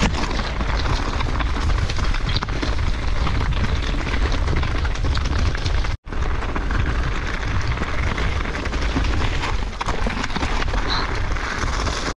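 Wind buffeting the microphone of a bike-mounted action camera, with the rattle and clatter of a mountain bike descending a rough trail at speed. A sudden brief break to silence comes about halfway through.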